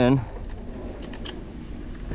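Insects buzzing steadily in the grass, a thin high-pitched drone over a low rumble.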